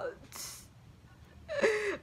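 A woman's audible sharp intake of breath between dramatic spoken lines, about half a second in, followed near the end by a breathy, voiced gasp as she begins the next line.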